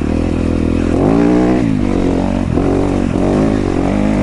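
Yamaha YZ250FX dirt bike's single-cylinder four-stroke engine under throttle, revving up about a second in, then falling and picking up again several times as the rider rolls on and off the gas along a trail.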